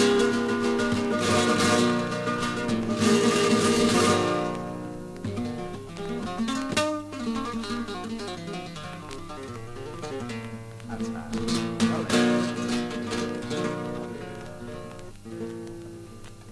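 Flamenco acoustic guitar playing: loud strummed chords in the first few seconds, then a quieter picked passage, with another run of strummed chords about three quarters of the way through before it fades.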